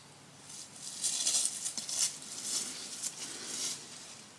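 Irregular rustling of ivy and dry fallen leaves underfoot as someone walks barefoot through a ground-cover bed.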